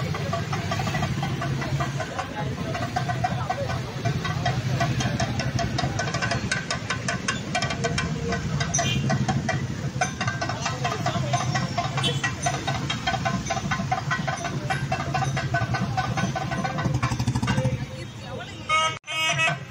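Motorcycle and scooter engines running close by in slow, crowded traffic, a steady low hum, with a fast run of sharp ticks from about six seconds in.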